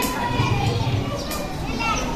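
Faint murmur of many children's voices as a seated group of schoolchildren whisper and talk among themselves.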